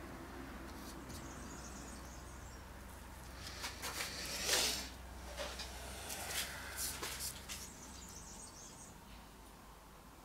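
Faint handling noise: a few seconds of light rustling and small clicks around the middle, the loudest a short swish about four and a half seconds in.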